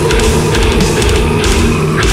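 Heavy metal band playing an instrumental passage without vocals: a loud, dense mix of guitars and a low repeating riff over drums.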